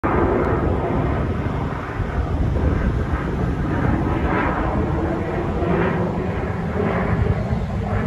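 Steady low rumble of a Blue Angels F/A-18 Super Hornet's jet engines as the solo jet approaches low and fast over the water on a sneak pass.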